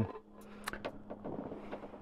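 Faint footsteps crunching in snow as a few irregular soft clicks, over a faint steady low hum.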